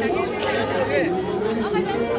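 Several people chattering and talking over one another.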